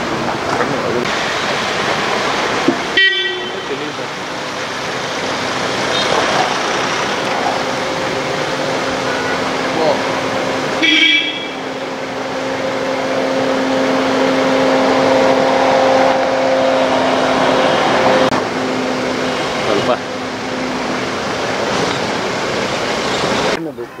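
A convoy of cars and SUVs driving by slowly on a dirt track, with continuous engine and tyre noise. Short horn toots come about 3 seconds in and again about 11 seconds in, and a steady drone runs through the middle.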